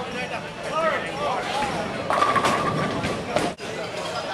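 Overlapping voices and chatter of people in a bowling alley, with a short steady high-pitched tone lasting under a second about two seconds in.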